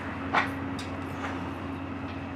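Steady low hum in the background, with one sharp thump about a third of a second in and two fainter knocks after it, as feet step onto and off a wooden-slatted park bench.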